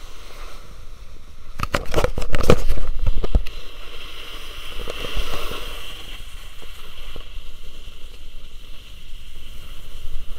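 Wind rushing over the microphone and snow scraping beneath the rider on a fast descent of a groomed run. From about one and a half to three and a half seconds in there is a loud stretch of buffeting and sharp knocks, and a steadier hiss follows.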